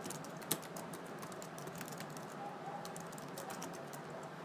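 Computer keyboard typing: a run of irregular key clicks as a short phrase is typed, with one sharper click about half a second in.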